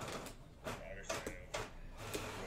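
Trading cards being handled and slid against one another by hand, a few short rustling clicks about every half second.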